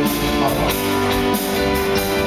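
A live band playing, with electric guitar and keyboard.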